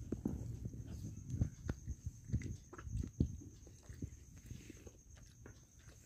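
Close-up eating by hand: chewing and wet mouth sounds with irregular soft clicks and knocks, as puri dipped in chickpea curry is eaten. The sounds are louder in the first half and thin out toward the end.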